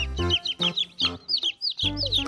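Chicks peeping over and over, short high calls that fall in pitch, several a second, over background music.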